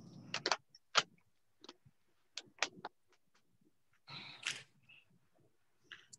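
A run of sharp, irregular computer mouse clicks, about a dozen in the first three seconds, with a short rustle about four seconds in and one more click near the end. The backing track has not started, so no music is heard.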